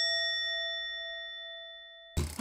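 A bell-like 'ding' sound effect: one struck metallic tone with ringing overtones, fading away steadily.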